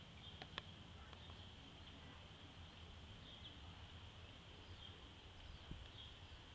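Near silence: faint outdoor background with a steady thin high hiss and a low rumble, and a couple of light clicks about half a second in.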